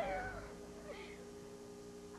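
A high voice trails off with a falling pitch, then a hush with a faint steady hum while the people on the set hold still in a frozen pose.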